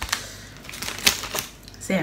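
A few sharp clicks and clinks of a metal spoon and fork against a glass bowl, about a second apart.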